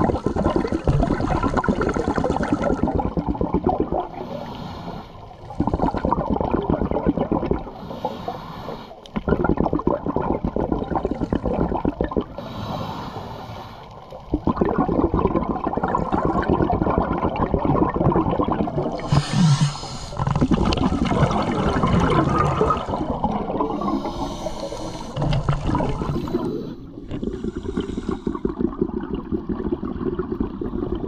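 A scuba diver's regulator exhaust bubbles heard underwater close to the camera: loud rushing, gurgling stretches of two to four seconds, each an exhaled breath, with shorter quieter gaps between them while the diver breathes in.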